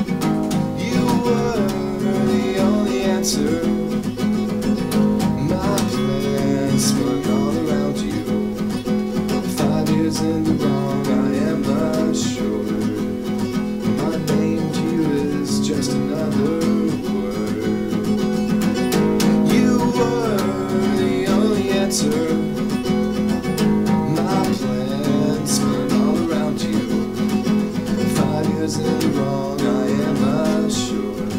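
Acoustic guitar strummed steadily through the song, with a man's voice singing over it at times.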